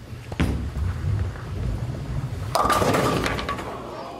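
Ten-pin bowling ball set down on the lane with a knock, rolling with a low rumble for about two seconds, then striking the pins with a loud crash that rings and fades.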